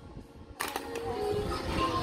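Rustling handling noise close to the microphone, starting abruptly about half a second in.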